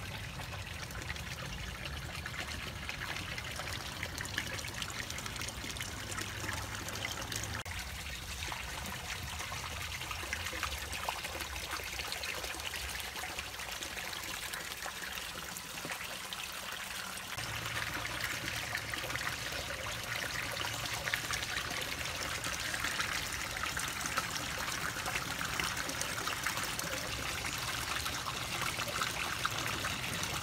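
Water trickling steadily in a koi pond, a little louder from about seventeen seconds in.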